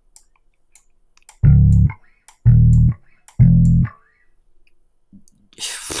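Three short slap-bass notes from FL Studio's Flex '5 String NewRock Slap' preset, each sounding about a second apart as it is clicked into the piano roll, stepping upward in pitch. Faint mouse clicks come in between.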